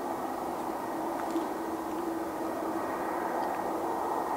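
Boeing 787-8's GEnx jet engines running at low power as the airliner turns onto the runway to line up for take-off: a steady hum with one held note.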